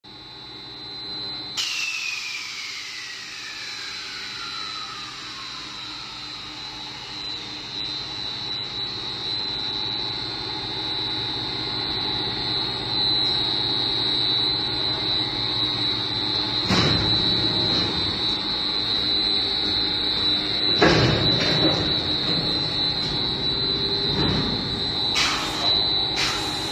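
Hydraulic blow molding machine running with a steady high-pitched whine over a machinery hum, slowly growing louder. A tone falls in pitch over a few seconds near the start. In the second half there are several heavy clunks from the moving mold clamping frame.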